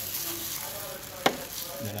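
A plastic hand citrus juicer being handled and moved with a plastic-gloved hand: rustling, hissing handling noise, with one sharp knock a little past a second in.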